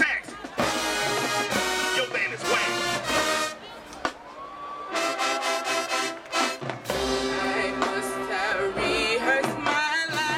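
High school marching band brass, with trumpets, trombones and sousaphones, playing held chords. It drops to a brief lull about four seconds in, then comes back in.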